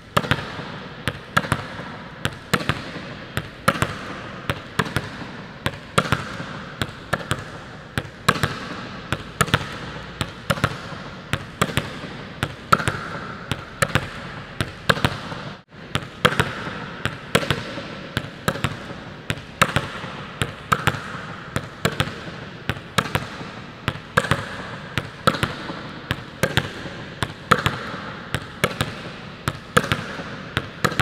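A volleyball slapped down with the open palm in a wrist snap and bouncing off a hard court floor over and over. It makes a steady rhythm of sharp smacks, about two a second, with a brief break about halfway through.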